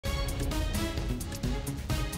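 Theme music for a television news headlines intro: held pitched notes over short regular hits.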